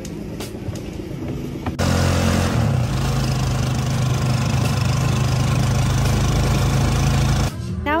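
Small motorcycle engine of a Philippine tricycle (motorcycle with sidecar) running on the move, heard from inside the sidecar as a loud, steady low drone. It starts suddenly about two seconds in, its pitch steps up a little soon after and then holds, and it stops abruptly near the end.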